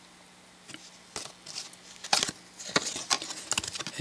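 Trading cards being handled and shuffled in the hands: a scattered series of light clicks and flicks as the cards are swapped, starting after a short quiet moment.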